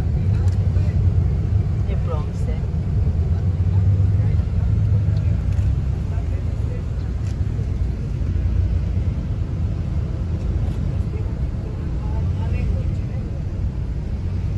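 Coach bus driving on a highway, heard from inside the passenger cabin: a steady low rumble of engine and road noise.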